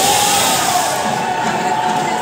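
Ground fountain firework (anar) hissing steadily as it sprays sparks, over crowd noise, with a steady wavering high tone.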